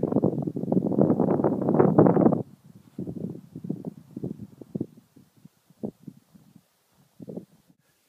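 Wind buffeting the camera microphone on an exposed ridge top: a loud, ragged rumble for the first two and a half seconds that stops abruptly, then weaker gusts that die away.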